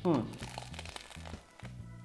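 Crisp crust of a French baguette cheese toastie crackling and crunching as it is bitten and chewed close to the microphone, with soft background music underneath.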